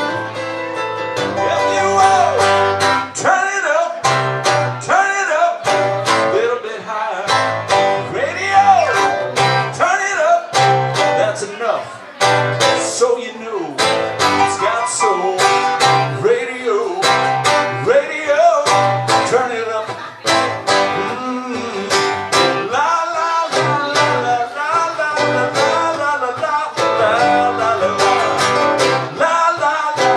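Live acoustic guitar strumming with a Nord Electro 4 keyboard playing along, and a sung vocal at times.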